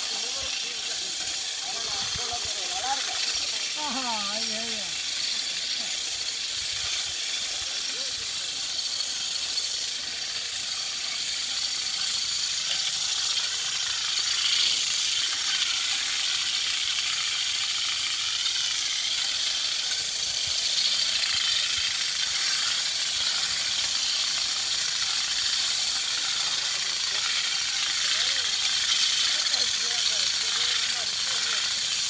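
Pellenc battery-powered olive harvesters, their vibrating combs on long poles beating through the olive branches: a steady, high, hissing rattle of combs and leaves.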